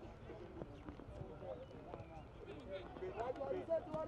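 Indistinct shouts and calls of football players during open play, over a low rumble, with a sharp knock near the end.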